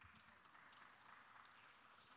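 Near silence: faint room tone with a soft, even hiss.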